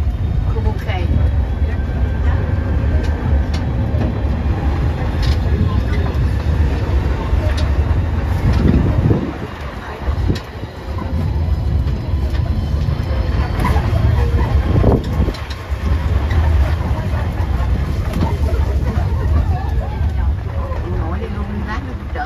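Riding in an open-sided shuttle tram on an unpaved road: a steady low rumble of the moving vehicle and wind on the microphone, with passengers talking in the background.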